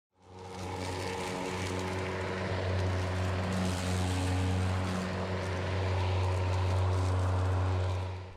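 Ryobi brushless self-propelled electric lawn mower running and cutting grass: a steady low hum from the spinning blade over a broad rushing hiss, fading in at the start.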